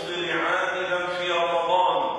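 A man's voice chanting Arabic in long, drawn-out melodic phrases, in a recitation style rather than plain speech.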